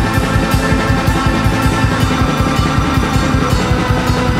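Studio-recorded rock music: drum kit, bass and guitars playing a dense, steady, fast-pulsed passage at full volume.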